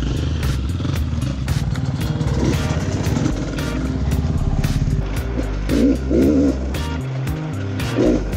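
Dirt bike engine revving as it is ridden through tight forest single track, its pitch rising and falling with the throttle, over background music with a steady beat.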